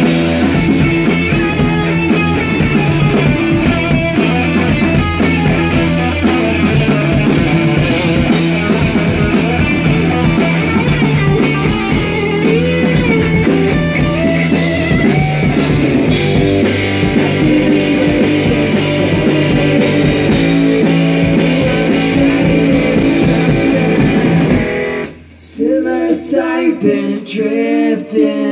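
A live rock band plays an instrumental passage on electric guitar, electric bass and drum kit. The band cuts off abruptly about a second before the end.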